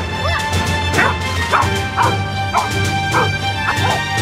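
Belgian Malinois protection dog barking repeatedly, about two barks a second, at an approaching man while guarding the boy, over steady background music.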